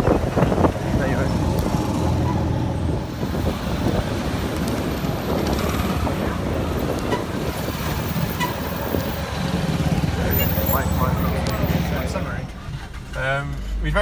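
Motorcycle taxi engine running with the rush of busy road traffic while carrying a pillion passenger. About twelve seconds in this gives way to a quieter car interior, and a voice begins.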